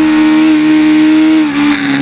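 Formula Student race car engine running at steady high revs under load, with a brief drop in revs and loudness about one and a half seconds in.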